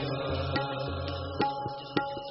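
Sikh kirtan music: harmoniums holding sustained chords, with tabla strokes and deep bass-drum thuds in a steady rhythm.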